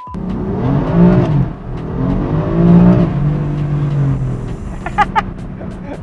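BMW M4's twin-turbo straight-six engine heard from inside the cabin, revving up and down in pitch a few times under acceleration, then holding a steady pitch before fading back near the end.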